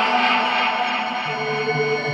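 Dubstep track in a drumless passage: held synth chords with no beat, and a low bass note joining about halfway through.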